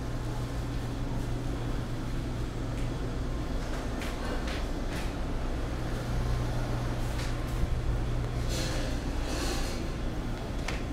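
Steady low mechanical hum of room machinery, with a few faint clicks and rustles scattered through the second half.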